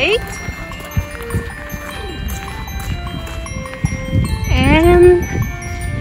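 Chimes ringing: many short, clear tones at different pitches sounding one after another, over a low rumble, with a brief voice calling out about four and a half seconds in.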